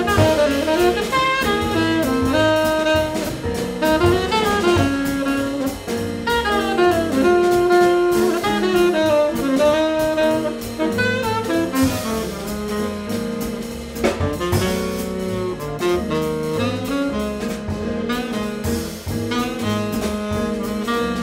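Jazz quartet playing: a tenor saxophone carries a moving melodic line of many quick notes, accompanied by piano, upright double bass and a drum kit.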